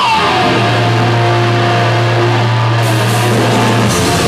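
Live heavy metal band opening a song: electric guitars ring out a long held low chord, with more high-end noise coming in near the end.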